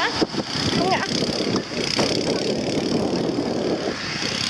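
Jeep engine running steadily, with brief voices over it.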